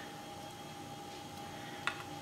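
Quiet room tone with a faint steady hum, and one small sharp click near the end.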